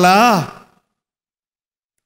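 A man's voice through a microphone drawing out the end of a word, fading out about half a second in, followed by dead silence.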